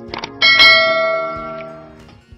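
Subscribe-animation notification bell sound effect: two quick clicks, then a loud bell chime about half a second in that rings on and fades away over about a second and a half.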